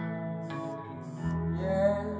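A recorded song played back through a pair of 3A Reference floor-standing loudspeakers and heard in the listening room: sustained notes over a bass line, with no sung words.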